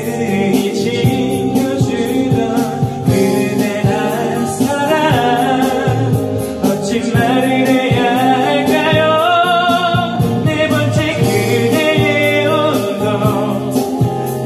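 Man singing a Korean pop ballad into a karaoke microphone over an instrumental karaoke backing track with drums, holding long notes with vibrato.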